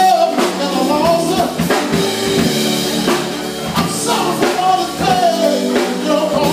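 A man singing live into a microphone over loud amplified music with a steady drum beat.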